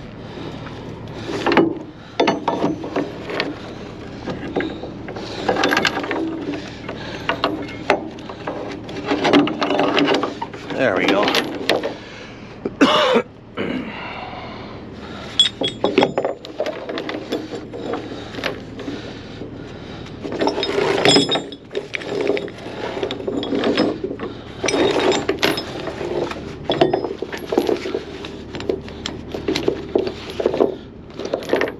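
A ratchet chain binder being worked to tighten a tie-down chain, its pawl clicking over and over, with heavy rusty chain links clanking against the trailer.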